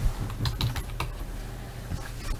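Computer keyboard being typed on: a few short, irregular key clicks.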